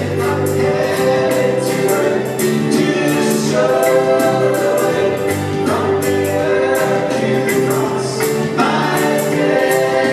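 Live church praise band playing a worship song: a woman sings lead into a microphone with many voices singing along, over guitars, keyboards and a drum kit keeping a steady beat.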